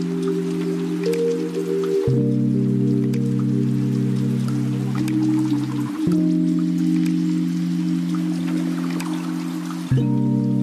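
Background music: soft sustained chords that change about every four seconds.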